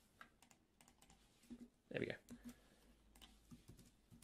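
Faint computer keyboard keystrokes, scattered and irregular, as commands are typed.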